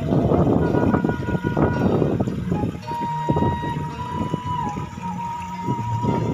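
Sundanese kecapi suling music: a bamboo suling flute holds one long note through the second half, over plucked kecapi zither. A rushing noise is loudest over the first couple of seconds.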